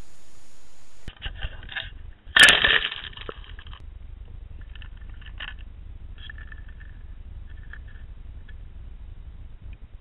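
Muffled knocks and scrapes over a low rumble, as picked up by an underwater camera's microphone. The loudest is a sharp crack about two and a half seconds in, followed by a few fainter scrapes and clicks. Before the cut, the first second holds only a steady hiss.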